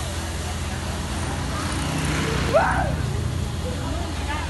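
A short, loud cry from a person, rising and then falling in pitch, about halfway through, over a steady low rumble.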